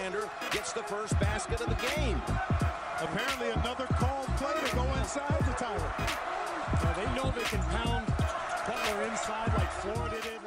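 Live college basketball game sound: steady arena crowd noise with a basketball being dribbled on the hardwood court, many short repeated bounces, and voices in the mix.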